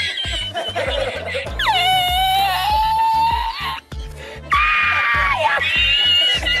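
A man's high-pitched, squealing laughter in two long drawn-out cries, the first held for about two seconds and the second shorter and falling. Background music with a steady beat plays underneath.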